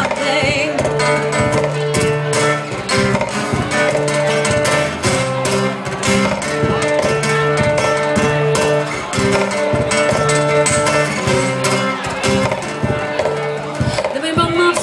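Acoustic guitar strummed in a steady, driving rhythm through a held chord pattern, an instrumental passage between sung lines.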